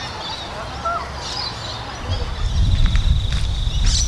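Birds calling, in short curved calls, with a low rumble like wind on the microphone starting about two-thirds in and a steady high buzzing trill setting in at the same time.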